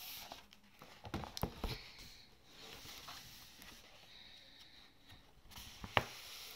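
Book and paper handling at a table: a few soft knocks about a second in, rustling, and a sharp click near the end.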